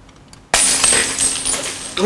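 A glass piece dropped onto a hard shop floor shatters about half a second in: one sharp crash followed by the bright tinkle of shards scattering and ringing for about a second.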